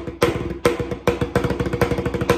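Tarola (banda snare drum) struck with wooden sticks in a steady groove: accented strokes a little over twice a second, with quick rapid strokes filling in between. The drumhead rings with a clear pitch under the strokes.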